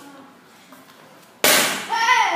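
A board breaking with a sudden sharp crack under a taekwondo kick about one and a half seconds in, followed at once by a shout.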